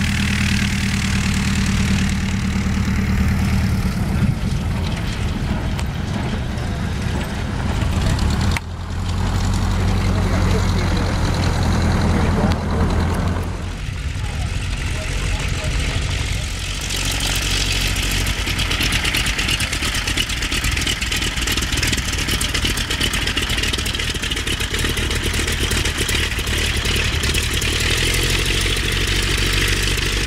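Vintage biplane piston engines running at idle and taxi power, a steady low engine drone. The sound changes abruptly about nine and fourteen seconds in, and from about seventeen seconds a rushing hiss lies over the engine.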